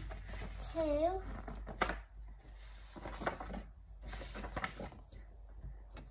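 A pause in the piano playing: a child's voice, a short sung or hummed sound about a second in, then a few light knocks and handling sounds in a small room.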